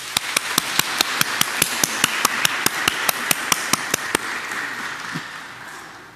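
A congregation applauding, with one person's clapping close to the microphone standing out at about five claps a second. The sharp claps stop about four seconds in, and the rest of the applause dies away by the end.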